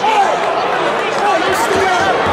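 Arena crowd: voices calling out over a steady murmur, with a couple of dull thuds about a second and a half in.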